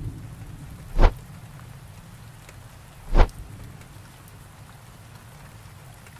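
Two sharp knocks about two seconds apart, a second in and again about three seconds in, over a low steady rumble.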